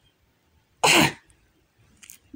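A man's single short cough, about a second in.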